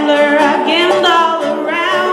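Live folk song: singing with a wavering vibrato over plucked banjo and acoustic guitar.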